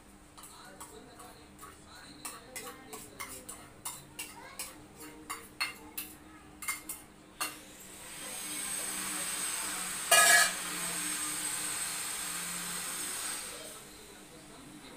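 Steel utensils clinking: a small steel cup and hands knocking against a steel plate while a gram-flour paste is mixed, two to three clinks a second. About eight seconds in the clinking gives way to a steady hiss with one short loud burst in the middle, which stops near the end.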